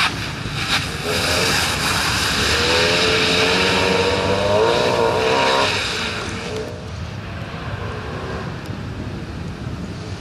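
Fiat Seicento rally car's small four-cylinder engine pulling hard as it passes close, the engine note rising in pitch until it cuts off about six seconds in, over the rush of tyres on the wet, muddy gravel. There are two sharp clicks in the first second, and the sound then fades as the car drives away.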